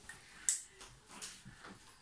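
A small plastic glitter tube being worked at by hand: one sharp click about half a second in, then a few faint small clicks, as the tight cap won't come off.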